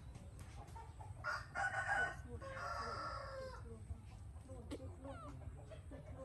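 A rooster crows once, starting about a second in and lasting about two and a half seconds, over a low steady background hum.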